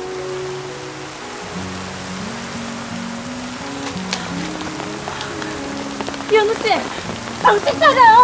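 Heavy rain falling steadily on pavement, under soft background music of slow, sustained low notes. Near the end a voice comes in with short wavering phrases.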